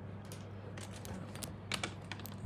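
A phone being handled, with a run of light, irregular clicks and taps like typing and a sharper click near the end. A steady low hum runs underneath.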